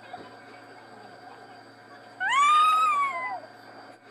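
A cat meowing once: a single long call about two seconds in that rises and then falls in pitch.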